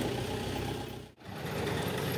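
A steady low hum of an idling motor vehicle engine, broken off briefly about a second in.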